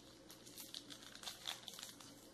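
Faint crinkling of a shiny gold wrapper as it is folded and twisted closed around a filled cone, in scattered soft crackles.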